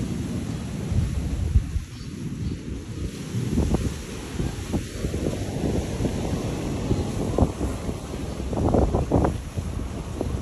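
Wind buffeting the microphone in uneven gusts, loudest near the end, over the wash of small waves breaking on a sandy beach.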